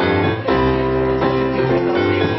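Instrumental music played live on keyboard: held chords, with a new chord struck about half a second in.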